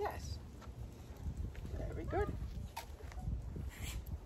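Footsteps of a person and a leashed dog walking on an asphalt driveway, heard as a few sparse, sharp taps over a low rumble, with a short spoken word of praise about two seconds in.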